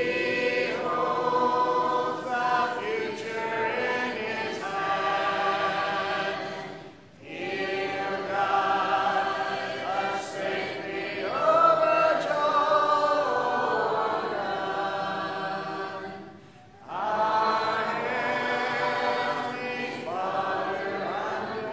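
Congregation singing a hymn unaccompanied, with no instruments, pausing briefly between phrases about seven seconds in and again about sixteen seconds in.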